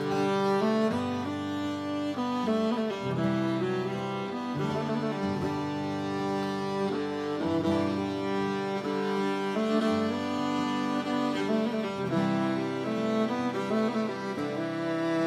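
Background music of slow bowed strings, held notes changing every second or two.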